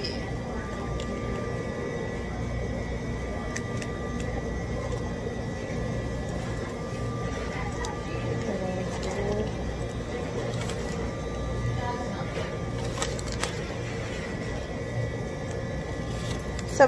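Fast-food restaurant interior ambience: a steady low hum of equipment with faint distant voices and a few light clicks.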